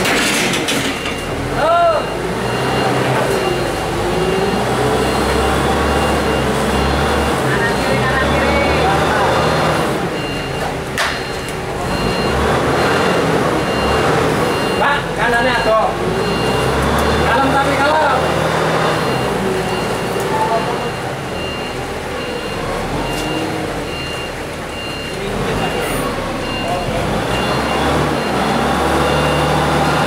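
Forklift engine running steadily as it creeps forward with a load, while its warning alarm beeps over and over at a high pitch. Men's voices call out now and then.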